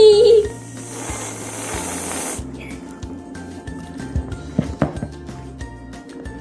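Aerosol can of Cool Whip whipped topping spraying with a steady high hiss for about two seconds, cutting off suddenly, over background music.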